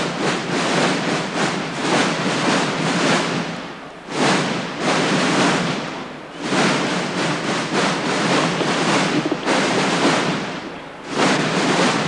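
Massed marching drums from a large corps of drummers playing a dense, unbroken stream of strokes. The sound swells and eases, dipping briefly about four, six and eleven seconds in.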